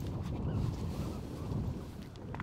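Wind buffeting the camera microphone: an uneven low rumble that swells and fades.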